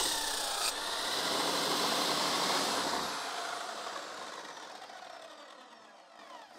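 Bench grinder's abrasive wheel grinding an axe edge with a steady rasping hiss. Over the last few seconds the grinder winds down with a falling whine and fades away, as the axe comes off the wheel and the motor is switched off.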